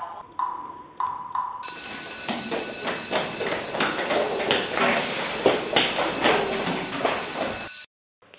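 Electric school bell ringing loudly and steadily for about six seconds, then cut off abruptly near the end. It is preceded by a couple of short electronic beeps.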